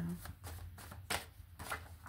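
A deck of cards being shuffled by hand: a run of quick, sharp card snaps and slides, the loudest a little past a second in.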